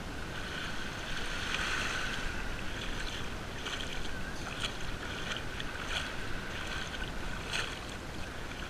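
Shallow sea water splashing and sloshing around someone wading out from the shore, with short splashes about every half second from about three seconds in, over a steady hiss of small waves and wind on the microphone.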